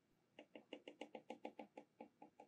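A faint, rapid run of small even clicks, about eight a second, starting about half a second in: a detented control knob being turned step by step as the coil current is turned down.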